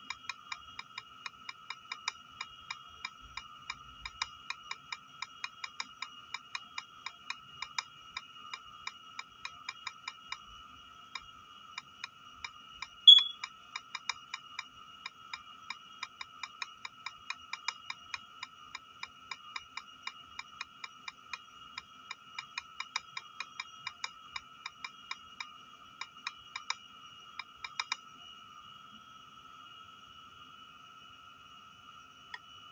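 Key-press clicks from a tablet's on-screen keyboard as a message is typed, about three a second in an uneven stream. They stop about two seconds before the end. A faint steady high whine runs underneath, and one louder short beep comes about halfway through.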